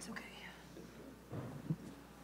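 Faint speech, too low to make out, with a short click at the start and a brief sharp knock near the end.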